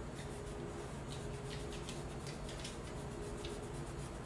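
A damp paper towel dabbing and rubbing on a painted chalkboard, a string of short, faint scuffs as excess paint is wiped away.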